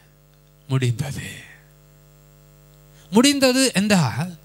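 Steady electrical mains hum from the microphone and sound system, a low hum of several steady tones that runs through the pauses, under two short bursts of a man speaking into a handheld microphone.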